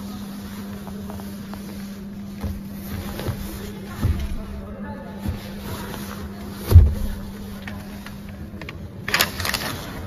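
Handling sounds inside a car's rear cabin: a hand pressing and patting the seat and door trim gives several soft thumps and one louder, deeper thump about two thirds of the way through, followed by a short rustle near the end, over a steady low hum.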